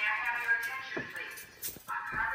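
Building fire alarm's recorded voice evacuation announcement playing through its speaker. The voice breaks off about a second in and starts again near the end.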